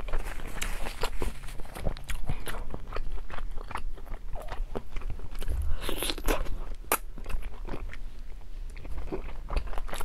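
Close-miked eating of cola chicken wings: wet chewing and biting with irregular sharp crunchy clicks, and a couple of louder cracks a little past the middle.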